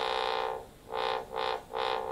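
Home-built Arduino 8-bit synthesizer playing a square-wave note. The held note stops about half a second in, then the same note is played three times, short and quick. The resonance control is turned off, so the note sounds clean, without the stray loud pitch that the imperfect resonance potentiometer otherwise adds.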